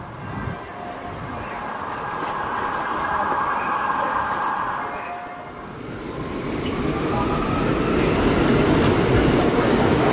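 City street noise with traffic, then from about six seconds in a subway train running, heard from inside the car, growing louder.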